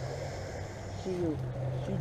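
Road traffic: a steady low engine hum from a passing vehicle, with a faint hiss above it.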